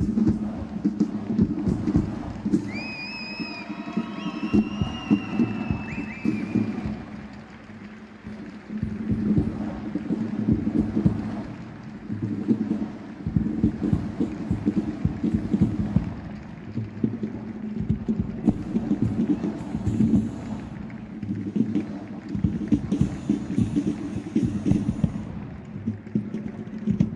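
Marching percussion group playing a rhythmic drum cadence on snare drums, bass drum and cymbals, swelling and easing in loudness. A high, wavering whistle-like tone sounds over the drumming for a few seconds near the start.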